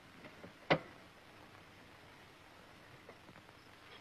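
Near silence with the faint even hiss of an old film soundtrack, broken by one sharp click about three-quarters of a second in.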